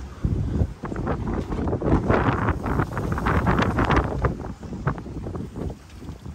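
Wind gusting over the microphone on the deck of a boat under way, in uneven buffets that are strongest in the middle and ease toward the end, with the boat's engine running underneath.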